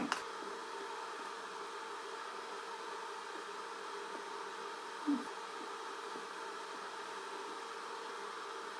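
Steady low background hiss with a faint hum, and one short faint sound about five seconds in.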